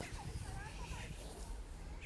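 Low steady rumble with faint, distant voices.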